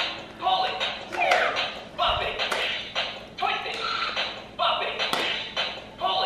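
Bop It handheld electronic game playing: its recorded voice calls out commands over its own sound effects and beat as it is played, repeating about every second and a half, with a falling swoop in each round.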